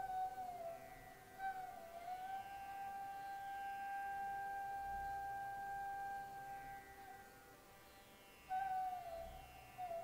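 Quiet instrumental background music: a slow, single-line flute melody with sliding notes, one long held note through the middle, and a new phrase starting near the end.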